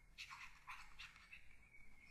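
Near silence with a few faint, short scratches of a stylus on a pen tablet as words are handwritten.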